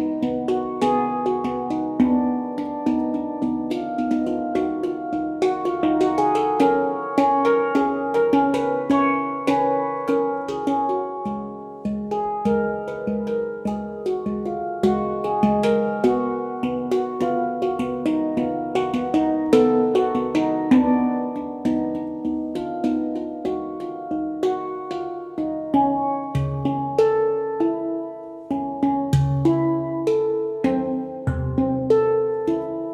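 Yishama Pantam handpans played by hand in a fast, dense rhythm: ringing steel notes struck one after another, mixed with sharp tapping strokes on the shells.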